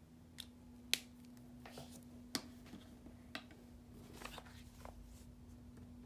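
Hands handling a paper notepad and plastic markers on a desk: a few scattered sharp clicks and taps, the loudest about a second in, with short light rustles of paper.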